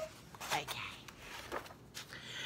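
A quiet spoken 'okay', then soft paper rustling and a light tap as a picture-book page is turned.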